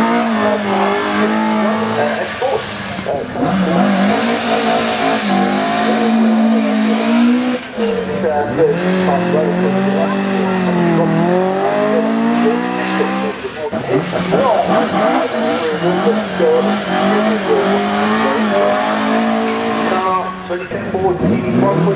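Race-prepared saloon car engines revving hard and accelerating away from a sprint start line, the pitch climbing and dropping again and again through gear changes.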